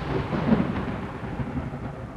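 Thunderstorm sound effect, slowed and heavy with reverb: a low rumble of thunder over falling rain, fading away.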